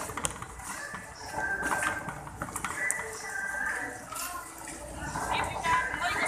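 Busy supermarket hubbub: indistinct voices of shoppers talking nearby, over a steady background of store noise with a few light clicks.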